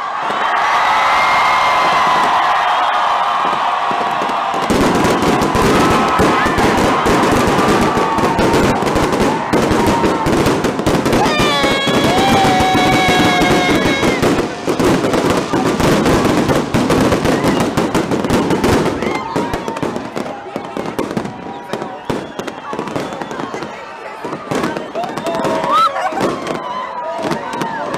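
A crowd shouting and cheering, then about five seconds in a dense, continuous crackle of fireworks and firecrackers sets in, with voices carrying on underneath.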